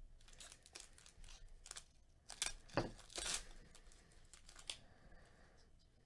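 Baseball card pack wrappers crinkling and tearing as packs are opened by hand: a run of faint, sharp crackles, loudest about halfway through.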